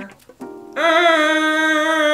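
A man imitating a car horn with his voice: one long, loud, held tone with a slight upward slide at its start, coming in under a second in after a short blip.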